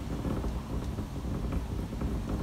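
Wind rumbling on the microphone, a steady low rumble.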